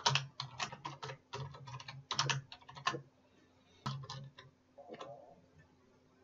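Computer keyboard typing: a quick run of keystrokes for about three seconds, a short pause, then a few more keystrokes.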